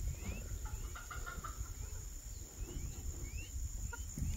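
Turkey poults peeping in short, scattered rising chirps, with a few low clucks from the turkey hen about a second in.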